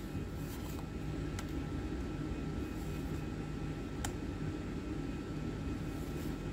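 Steady low room hum, with two faint clicks as a stack of trading cards is flipped through by hand.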